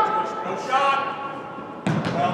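Distant players' shouts reverberating in a large indoor sports hall, then one sharp thump near the end, a soccer ball being kicked hard.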